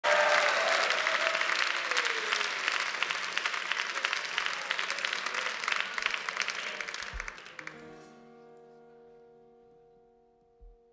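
A studio audience applauding, dense at first and dying away over about eight seconds. Near the end a soft held chord of steady tones starts as the song's intro.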